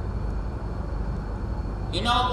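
Steady low rumble with a faint hiss: the background noise of a hall picked up through the lecture microphone, with no voice over it. A man's speech starts right at the end.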